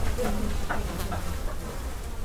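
A buzzing insect, heard in short buzzes early on over a steady low rumble.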